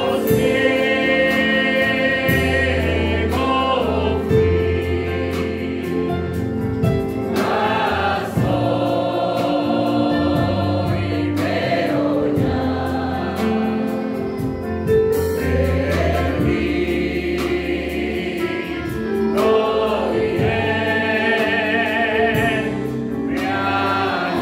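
Live Christian worship music: a man sings into a microphone, holding long wavering notes, over keyboard and electric bass guitar.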